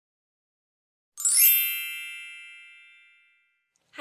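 A single bright chime sound effect struck once about a second in, with a shimmering onset, ringing out and fading away over about two seconds.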